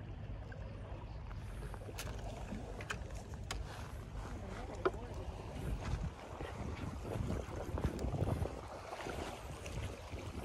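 Wind rumbling on the microphone, with a few light, sharp clicks in the first half.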